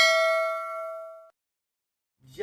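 Notification-bell 'ding' sound effect from a subscribe-button animation, a single bright chime ringing out and fading, then cut off abruptly just over a second in.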